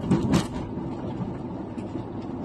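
Steady road and engine noise inside a moving car's cabin, a low rumble. A short, loud double burst of sound comes right at the start.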